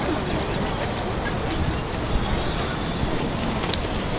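Steady outdoor background noise with faint voices of distant people mixed in.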